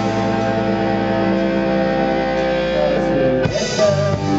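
Live band playing an instrumental passage with no singing, a keyboard among the instruments: a chord held steady for about three seconds, then a new chord struck near the end.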